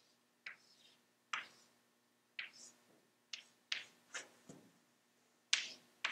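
Chalk writing on a blackboard: a string of short, sharp chalk strokes and taps, about eight of them, coming closer together in the second half.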